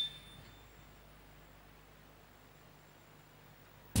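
Near silence: quiet hall room tone with a faint, steady low hum, after the last word's echo dies away in the first half second.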